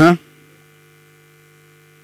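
The end of a spoken word, then a faint steady electrical hum made of a few even, unchanging tones, like mains hum picked up by the recording.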